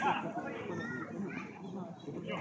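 Players' voices calling out during a small-sided football match, several voices overlapping, quieter than the shouting just around it.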